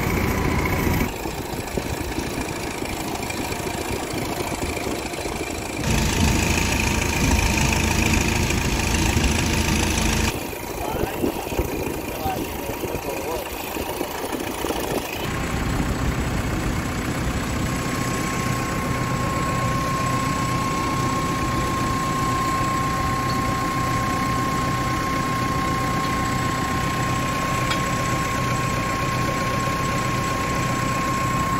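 Farm tractor engine running steadily, heard through several abrupt cuts in the first half; from about halfway it runs on unbroken with a thin steady whine over it.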